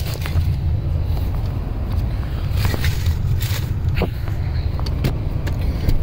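Handling noise as an SUV's rear seat cushion is lifted and folded up: a scatter of short clicks and knocks from the seat and its latch, over a steady low rumble.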